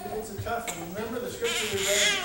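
A man's voice speaking into a microphone in a room.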